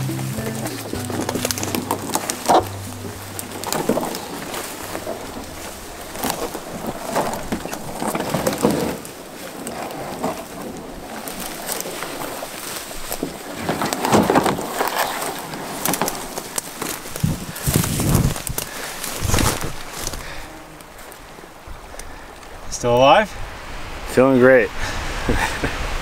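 Spruce branches scraping and brushing along a canoe hull carried overhead on a portage, with irregular twig cracks and rustling. Background music fades out in the first few seconds, and a voice is heard near the end.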